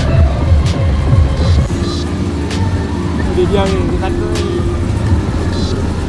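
Fairground noise around a spinning chair-swing ride: a low rumble of machinery and crowd, with music at a steady beat and voices over it.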